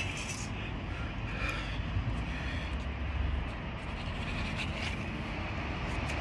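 Low, steady outdoor rumble with a few faint clicks and knocks as a wooden picture frame and its glass are handled and set down.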